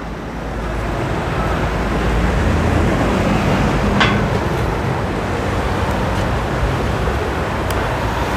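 Road traffic on a four-lane city street: a steady wash of passing cars, with a low rumble that swells and fades in the middle. A brief sharp click about four seconds in.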